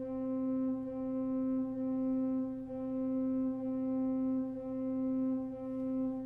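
Pipe organ sounding the same single note over and over, about once a second, each note cut off by a short gap before the next: detached, non-legato playing in which the beat is marked by the space before a note rather than by loudness, since the organ cannot accent.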